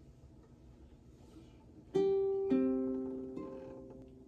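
Ukulele strings plucked one at a time: a single note about two seconds in, a lower note half a second later, and a fainter higher note near the end, each ringing on and fading.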